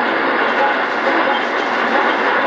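Weak AM shortwave broadcast on 11755 kHz heard through an ICOM IC-R8500 communications receiver: a steady wash of static and hiss, with faint traces of the station's audio buried under the noise.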